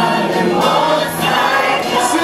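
Live worship team of male and female singers singing a gospel song together in harmony into microphones, holding long notes.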